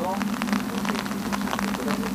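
Steady low hum with many light, irregular crackles, and a faint voice trailing off at the very start.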